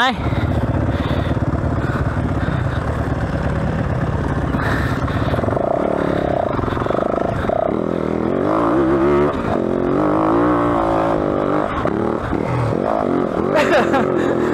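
Yamaha WR450F single-cylinder four-stroke dirt bike engine running low and steady, then revving hard from about five seconds in as the bike climbs a steep loose hill. The pitch rises and wavers under load with the rear wheel spinning for grip, and it settles near the end.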